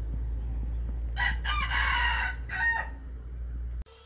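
A rooster crowing once, a call of about a second starting about a second in, followed by a shorter call, over a steady low rumble that cuts off abruptly near the end.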